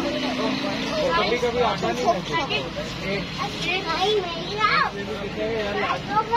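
Several voices, a child's among them, talking over one another in short bits, over a steady low hum.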